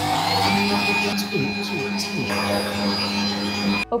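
Electric mixer whipping egg whites, its motor rising in pitch as it speeds up to a higher setting in the first half second, then running at a steady whine until it cuts off just before the end.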